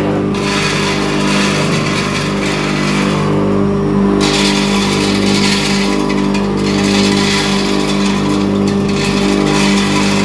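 Electric masala grinding machine (atta chakki pulveriser) running at steady speed: a constant motor hum with a hissing grinding noise on top that drops away briefly a few times as grain is fed into the hopper.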